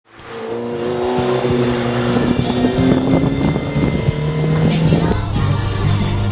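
Background music mixed with the sound of a car engine running.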